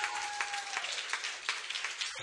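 Audience applauding at the end of a live band's song, with the band's last held note dying away in the first second.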